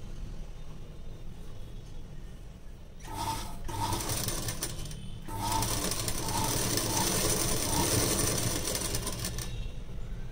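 Household sewing machine stitching a fabric seam in two runs: a short burst about three seconds in, then after a brief stop a longer steady run through most of the second half that stops shortly before the end.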